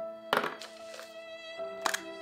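Background music with held chords, with two sharp plastic clicks, one about a third of a second in and one near the end, as hollow plastic Easter eggs are pulled open.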